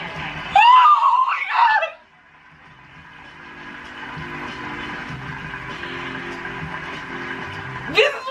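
Two women scream with excitement in high, pitch-bending shrieks for about a second and a half. Then music fades in and plays steadily underneath.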